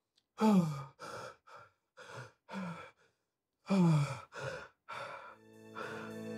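A young man's heavy, distressed breathing: two long sighs that fall in pitch, about half a second and nearly four seconds in, with short ragged breaths between them. A sustained musical chord fades in near the end.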